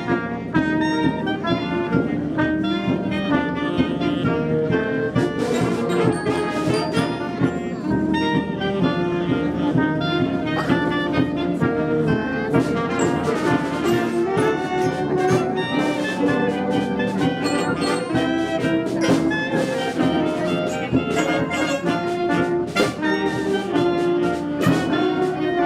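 Community concert band of brass and woodwinds (saxophones, sousaphone, euphonium) playing a piece, continuous music with no break. The sound is distorted because the band is loud for the camera microphone.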